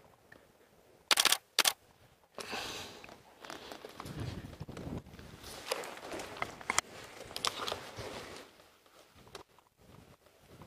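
Camera shutter clicking in two quick bursts about a second in, followed by several seconds of soft rustling and light scuffing.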